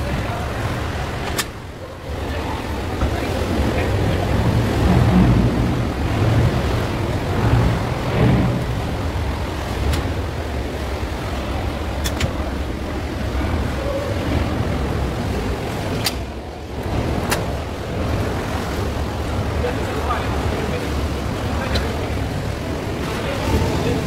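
A small motorboat's engine runs steadily with a low rumble, under indistinct voices. A few sharp clicks come through as the phone is handled.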